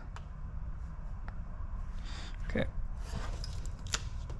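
Faint scratching of a craft knife blade cutting through transfer tape held against a wall, over a steady low hum, with a sharp click near the end.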